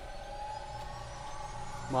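A faint sustained tone that rises slowly in pitch and then holds steady.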